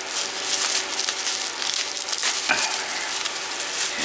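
Plastic bubble wrap crinkling and rustling continuously as it is unwrapped by hand.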